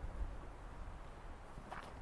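Quiet outdoor background: a faint low rumble with a light, even hiss and no distinct event.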